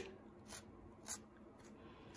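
Near silence, with room tone and two faint brief scratches, about half a second and a second in.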